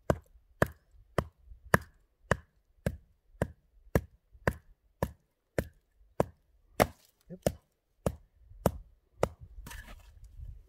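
Wooden baton striking the top of a wooden stake, hammering it into the ground: about two sharp knocks a second, stopping a little past nine seconds in.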